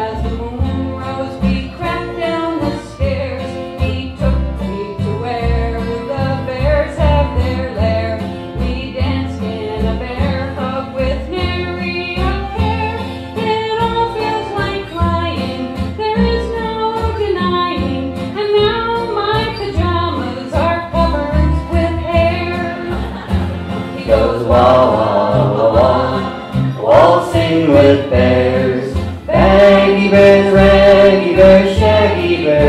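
Old-time string band playing an instrumental break: a group of fiddles carries the melody over strummed acoustic guitars, a banjo and an upright bass keeping a steady beat. It gets louder near the end.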